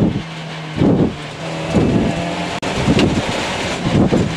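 Citroen C2 rally car's engine running hard with tyre and gravel noise, heard from inside the cabin. The sound swells in surges about once a second and cuts out briefly about two and a half seconds in.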